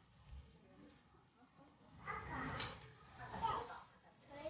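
Faint background voices of people talking, starting about halfway through, after a couple of seconds of near silence.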